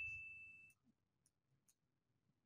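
A high ringing tone fading out within the first half second, then near silence with a few faint clicks.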